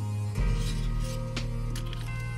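Soft background music with sustained chords that change about half a second in. Over it come a brief rustle and two light clicks as small resin model parts are picked up and handled.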